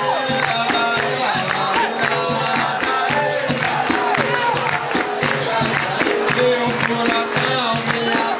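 Live capoeira music: berimbaus and an atabaque drum playing a steady rhythm, with people singing and the circle clapping along in time.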